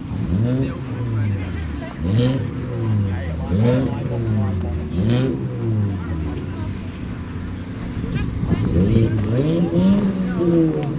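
Naturally aspirated Toyota Supra Mk4 straight-six, breathing through a 3-inch titanium cat-back exhaust, being free-revved while parked. Each blip rises quickly and falls back more slowly, several times over, with quicker blips close together near the end.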